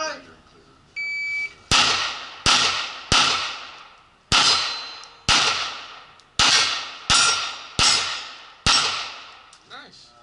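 A shot timer's start beep, then nine pistol shots fired at steel plates over about seven and a half seconds, each crack followed by a ringing tail. This is a timed Steel Challenge string that the timer scores at 7.73 seconds.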